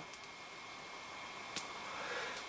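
Faint steady hiss with a thin high whine, and one light click about one and a half seconds in.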